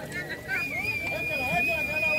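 Faint background talking, with a steady high-pitched whistle-like tone that starts about half a second in and holds level.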